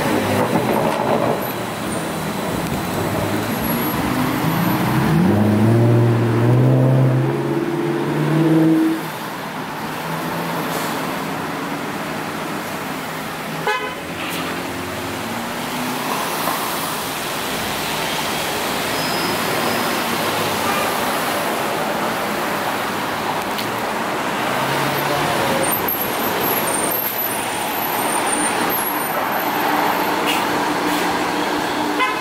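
Busy street traffic with trolleybuses and cars passing. A vehicle's pitched drive tone rises in steps as it pulls away a few seconds in, a single sharp click comes about halfway through, and steady road noise continues.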